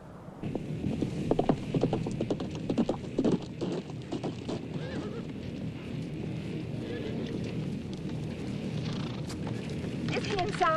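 Horses' hooves clopping, with many hoofbeats coming thick and fast for the first few seconds and then thinning out.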